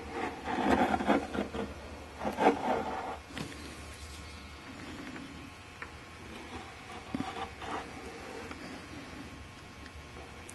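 Utility knife blade drawn along a rubbery Sikaflex-filled seam between mahogany planks, cutting the old seam filler out. Irregular, faint scraping and rubbing, busier in the first three seconds and quieter after.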